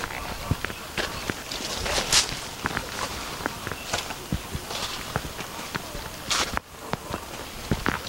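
Footsteps on soil among vegetation, with leaves and vines brushing and rustling against the moving camera operator: irregular clicks and a few longer swishes.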